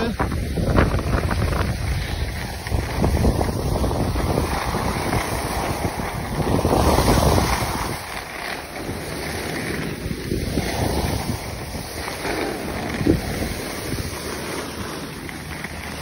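Wind buffeting a phone's microphone while skiing downhill, with the skis hissing over packed snow. The rushing noise eases off about halfway through.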